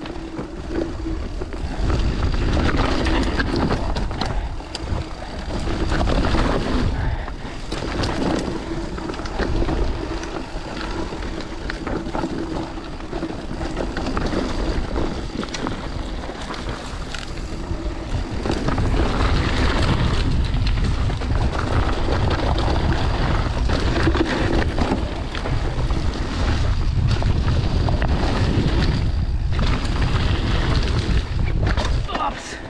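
Mountain bike riding down a dry dirt forest trail: knobby tyres rolling and the bike rattling and knocking over bumps and roots, with wind rushing over the microphone. The low rumble grows heavier for the last third.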